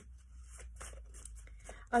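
A deck of oracle cards being shuffled by hand: a quick, irregular run of soft papery flicks and rustles.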